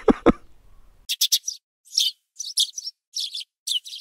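Bird chirping sound effect laid over silence: a string of short, high chirps, seven or eight of them over about three seconds, with no room sound behind them.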